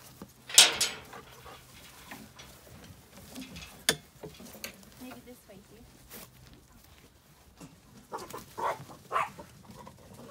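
Dog barking, a run of short barks near the end, with a loud sharp clank just after the start as the iron field gate is unlatched and a single sharp knock about four seconds in.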